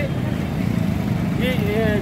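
Steady street traffic noise with a low engine rumble. A man's voice starts speaking again about one and a half seconds in.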